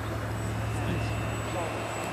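Steady drone of a Dynam Tiger Moth electric RC biplane's motor and propeller in flight, with a thin high whine partway through.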